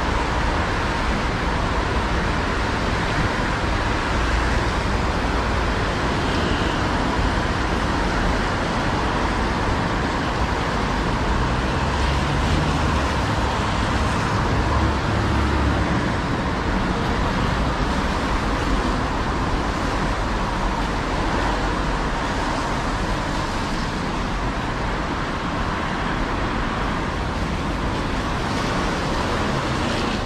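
Steady city road traffic on wet asphalt: a continuous mix of tyre hiss and engine rumble, with no single vehicle standing out.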